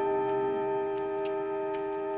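Suspense film score: a held orchestral chord of several notes with a soft ticking, like a clock, about two ticks a second.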